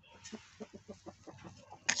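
Chickens clucking faintly: a quick run of short, soft clucks, about six or seven a second.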